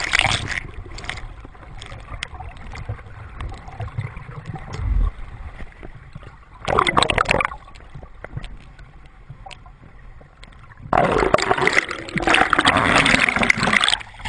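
Sea water gurgling and sloshing around a camera held just below the surface, sounding muffled, with loud bursts of splashing and bubbling about seven seconds in and again from about eleven seconds as the camera breaks the surface.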